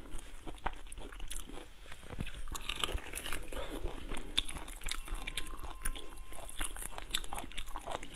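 Prawn shells crackling and snapping in quick, irregular clicks as a prawn is pulled apart and peeled by hand.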